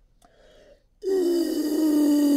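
A man blowing hard into a cup held against his mouth: after a faint breath in, a loud buzzing blow starts about a second in, steady and falling slightly in pitch. The air escapes around the cup's rim, so no water is pushed out of the straw.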